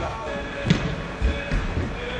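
Soccer ball play on indoor turf: a sharp knock about 0.7 s in and a few low thuds, heard over background music.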